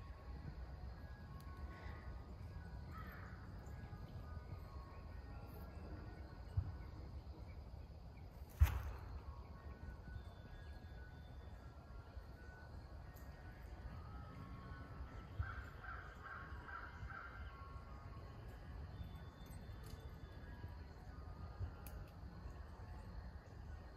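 Crows cawing, faint, with a quick run of about six caws around sixteen seconds in, over a steady low outdoor rumble. A single sharp thump about halfway through is the loudest sound.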